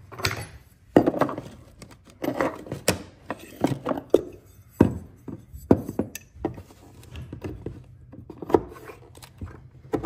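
Oak floorboard being knocked into place with a flooring pull bar and mallet: about a dozen irregular wooden knocks and thuds as the last board is driven tight against the baseboard.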